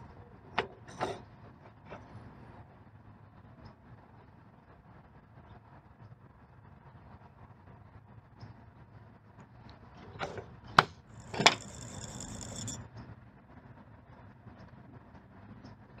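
Quiet handling of a syringe and a plastic SpinTouch reagent disc: a few small clicks and taps, with two sharper clicks and a brief high-pitched tone about eleven seconds in.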